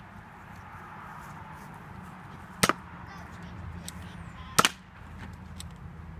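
Two sharp snapping shots about two seconds apart, each a quick double crack, fired at cardboard-box targets, over a steady outdoor background hum.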